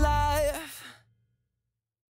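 The final held sung note of a rock-style theme song with its band, stopping about half a second in and dying away by about a second in.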